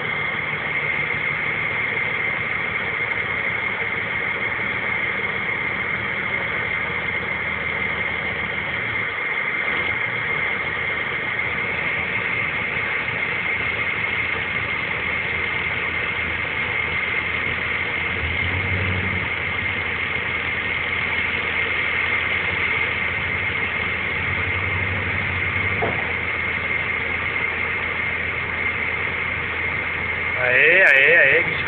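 Heavy diesel engine running steadily under load, heard from inside a vehicle cab, with a steady high-pitched whine over it and a couple of brief deeper swells in the engine note.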